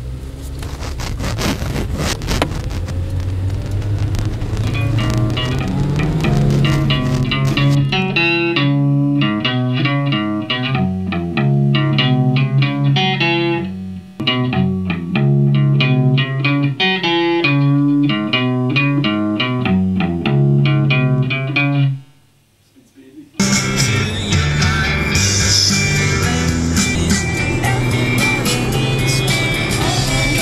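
Rock music with guitar: it opens under a dense, noisy wash, then a riff of clear, separate notes in a steady rhythm from about eight seconds in. It stops dead for about a second after twenty seconds, and the full band comes back in loud.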